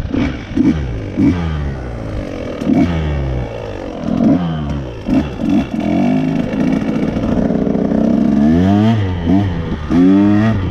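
Dirt bike engine under a rider's throttle, revving up and dropping back in repeated short bursts, then holding higher revs in the second half with a couple of quick rising sweeps near the end.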